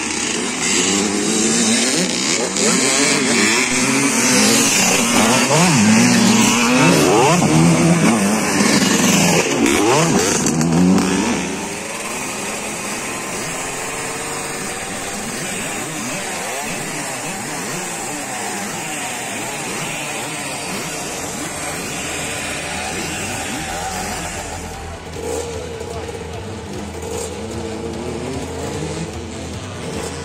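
Several classic two-stroke motocross bikes riding a dirt track, their engines revving up and down over one another. About eleven seconds in the sound drops to a quieter, steadier run of engines, with voices over it.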